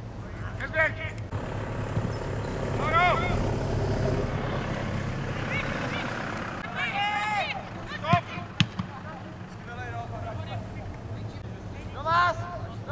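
Shouted calls from football players across the pitch, short and rising then falling in pitch. A broad rushing noise swells and fades in the first half, and there are two sharp knocks a little after the middle.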